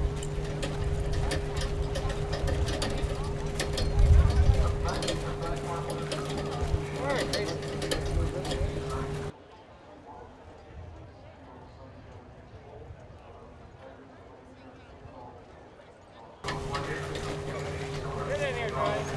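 Indistinct background voices over a steady low hum, with a low thump about four seconds in. The sound drops to a faint background from about nine to sixteen seconds, then the hum and voices return.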